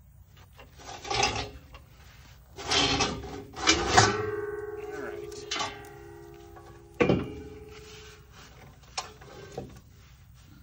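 Metal clanks as a truck's cylindrical air tank is worked loose and lifted off the chassis. The hollow tank rings for several seconds after the loudest knock, about four seconds in, and rings again more briefly after another knock near seven seconds.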